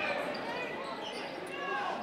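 Faint gym ambience during a basketball game: crowd murmur and scattered distant voices, with a basketball bouncing on the hardwood court.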